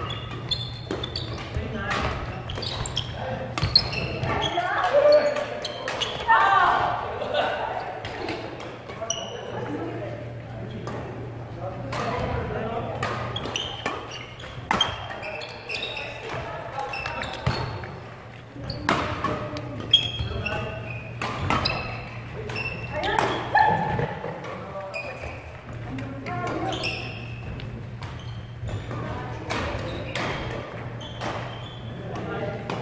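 Badminton rackets striking a shuttlecock, heard as sharp irregular smacks through a rally, mixed with players' voices calling out, in a large echoing sports hall.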